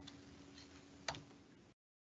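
Near silence with one faint, short click about a second in; the sound then cuts out completely just before the end.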